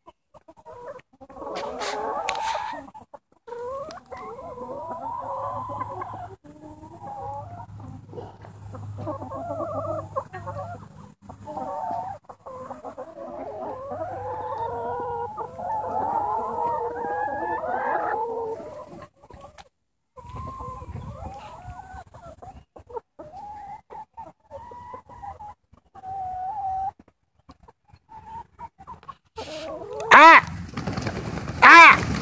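A flock of free-range brown laying hens clucking, with many short calls overlapping.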